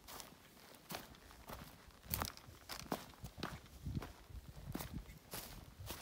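Footsteps of a hiker walking on a dirt trail strewn with dry fallen leaves and stones, a crunching step about every two-thirds of a second.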